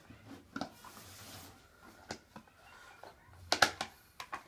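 Plastic disc golf discs being handled and lifted out of the bag: scattered light clicks and rubbing, a brief rustle about a second in, and a louder clatter of several quick knocks near the end as the discs knock together.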